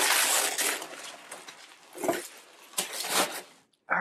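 Rustling of folded clothes and their packaging being lifted and handled: a longer rustle at the start, then two shorter ones about two and three seconds in.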